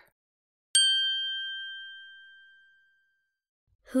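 A single bell-like chime struck once about a second in, ringing with a clear tone and fading away over about two seconds. It marks the break between items of a recorded listening exercise.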